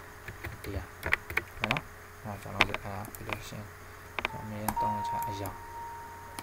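A person's voice in the background, with several sharp clicks. A steady high tone starts about four seconds in.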